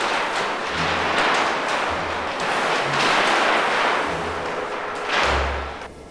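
Large sheets of paper rustling as they are lifted and shuffled, with a few soft thumps as they are laid down.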